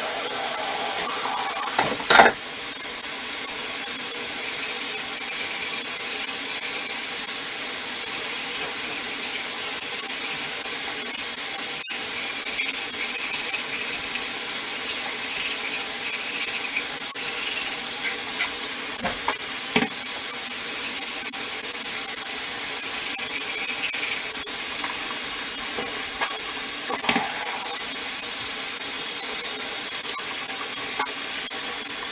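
Teeth being brushed with a toothbrush, over a steady hiss that runs throughout, with a few brief knocks.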